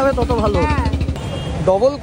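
Low, fast-pulsing rumble of a motor vehicle's engine close by, strongest for the first second and a half, mixed with people talking.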